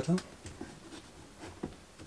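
Faint handling noise from a small 12-volt Seekr Sirocco II fan being held and shifted against an upper cabinet, with light rubbing and a few small clicks, the clearest about one and a half seconds in.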